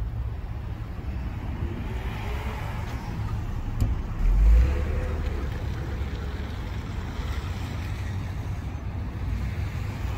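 A police patrol SUV driving off slowly: a steady low engine and tyre rumble, with a brief heavier low thump about four seconds in.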